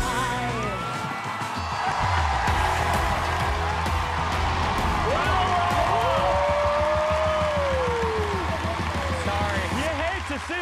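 Audience cheering and clapping over the band's music as the song ends, with voices shouting and whooping. One call is held for a couple of seconds about halfway through.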